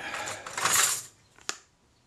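Small metal hand tools clattering as they are handled and one is picked up from among others. A single sharp click follows about a second and a half in.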